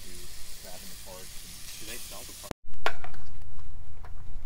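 Sausage sizzling on a griddle over a propane camp stove, with faint voices behind it. About two and a half seconds in the sizzle cuts off, and a louder low rumble with a few sharp clicks follows.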